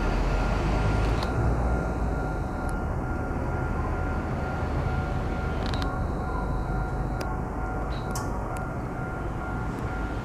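Railway platform ambience: a steady low rumble of train noise, carrying a faint steady hum and a few scattered sharp clicks.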